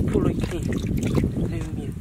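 A person's voice speaking a few words over a loud, steady low rumble.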